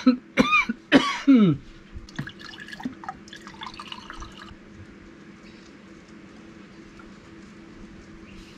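A man coughing hard a few times, then water poured from a plastic jug into a glass. The coughs are the loudest part; the pouring is much quieter and stops about four and a half seconds in.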